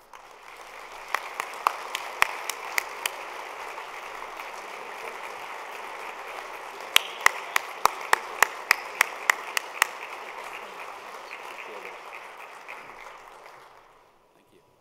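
Audience applauding, swelling in over the first couple of seconds and fading out near the end. Two runs of louder, sharper claps close to the microphone stand out, one early and one in the middle.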